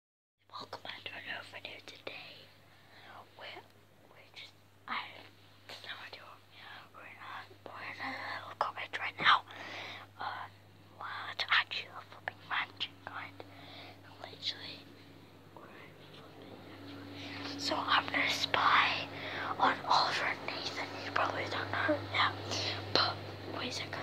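A child whispering close to the microphone, in breathy bursts that get busier in the last few seconds, over a steady low hum.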